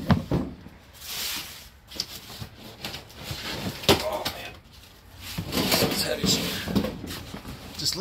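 Cardboard boxes and paper packing being handled and shifted, a rustling broken by a few sharp knocks as the boxes are moved.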